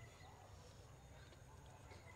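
Near silence: faint background noise only.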